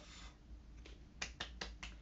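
Hand claps: four quick, light claps about a fifth of a second apart, starting a little after a second in.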